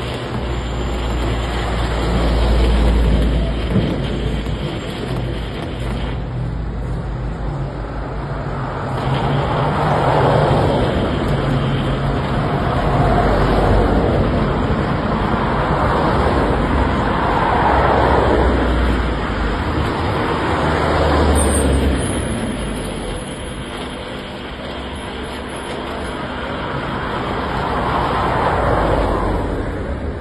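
Road traffic: vehicles passing one after another, each swelling and fading over a low rumble.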